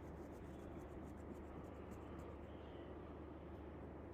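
Faint steady room noise with a low hum, and a few faint quick ticks in the first two seconds or so.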